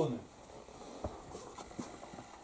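The end of a man's spoken phrase, then faint rustling with a few soft ticks in a small room.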